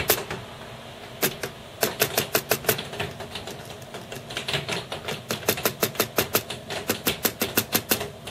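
Rapid tapping on the controller chips of a Commodore Amiga A500 keyboard: bursts of sharp clicks at about six a second, with short pauses between. The tapping probes for an intermittent bad connection behind the keyboard's flashing Caps Lock fault.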